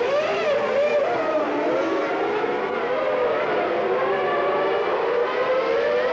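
Several Formula One car engines running at once, their pitch rising and falling with the revs, with one engine climbing slowly in pitch near the end.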